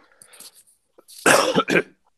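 A man clearing his throat: a short, harsh double burst about a second and a half in, just before he starts talking.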